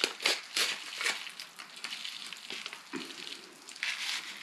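Popping candy crackling in a chamoy-filled pickle: a scatter of small, irregular sharp pops throughout.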